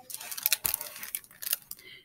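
Pages of a picture book being turned and handled: paper rustling with a string of small, irregular clicks and taps.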